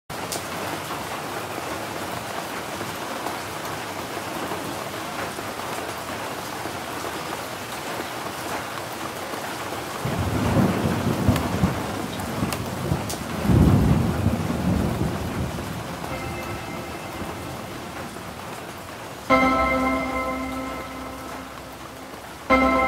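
Steady rain opening a melodic dubstep track, with two heavy rolls of thunder about ten and thirteen seconds in. Near the end a pitched musical chord enters with a sharp start and slowly fades.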